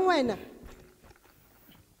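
A raised voice finishes a loud spoken phrase in the first half second, then about a second and a half of low room noise with faint small clicks and rustles of movement.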